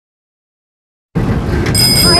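Silence, then a little over a second in, background music starts and a bicycle bell rings once, its ring hanging on.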